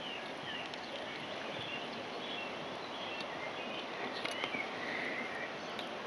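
Quiet forest background: a steady low hiss with faint, scattered high bird chirps.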